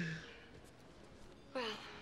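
A short breathy sigh, fading within a moment, then quiet room tone until a voice starts near the end.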